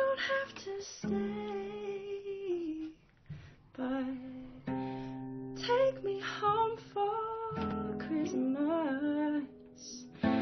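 A woman singing a slow song over guitar, holding long notes with vibrato, with a short pause about three seconds in.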